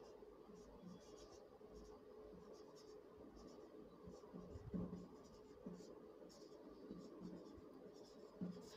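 Marker pen writing on a whiteboard: a run of faint, short scratching strokes as letters are written, over a faint steady hum.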